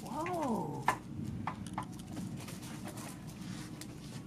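A short wordless vocal sound from a person, gliding up and then down in pitch, followed about a second in by a sharp click and a few lighter taps, over a steady low hum.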